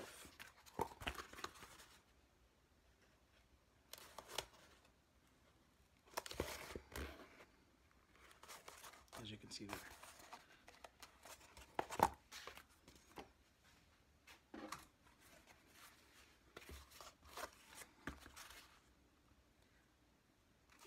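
EVA foam pieces coated with tacky contact cement being handled and pressed together along their seams: faint scattered rustles, scrapes and sticky tearing sounds, with a sharper click about twelve seconds in.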